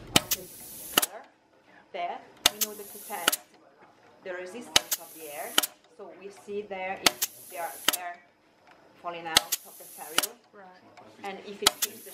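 Pneumatic brush-testing rig cycling about every two and a half seconds. Each stroke is a sharp click, a burst of air hiss lasting under a second, and a second click as the cylinder drives the clamped brush into a metal trough and back. It is running a quality-control test for bristles that are not properly glued in.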